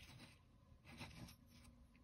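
Near silence, with faint soft rubbing as a small plastic toy figure is handled and lifted off a surface by hand, once at the start and again about a second in.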